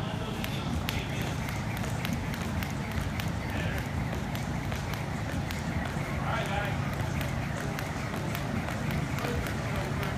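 Speed jump rope ticking against a rubber gym floor in a quick, even rhythm as she skips, with her light landings, over a steady low hum.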